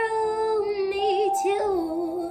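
A woman singing a long, wavering held note that dips about one and a half seconds in, over a backing track of sustained chords.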